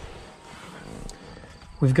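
Rustling and shuffling of clothes against a leather car seat as a person slides into the back seat, with a faint tick about a second in.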